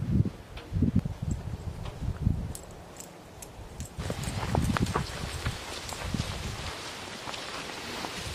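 Footsteps on leaf-strewn ground: a series of dull thuds about every half to three-quarters of a second, with light rustling of dry leaves underfoot.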